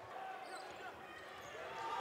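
Faint live court sound of a basketball game in a gym: a basketball bouncing and play on the hardwood floor over a low room murmur, getting a little louder toward the end.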